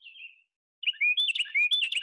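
Recorded Carolina wren song: after a short gap, a loud, rapidly repeated whistled 'tea-kettle, tea-kettle' phrase starts a little under a second in.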